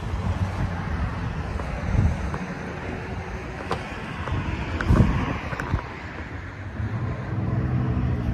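Road traffic and wind on the microphone, with dull thumps about two and five seconds in and a steady low engine hum building near the end.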